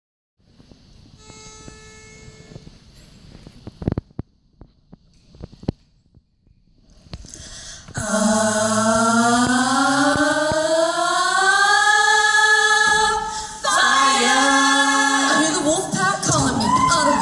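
Female a cappella group singing sustained chords that slowly rise in pitch, coming in about halfway through, with a short break before the voices resume. Before that there is a faint steady note and a few knocks.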